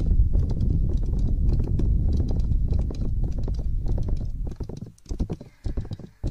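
ASMR trigger sounds: rapid, dense tapping close to the microphone, heavy in the bass, thinning out to a few scattered taps about four and a half seconds in.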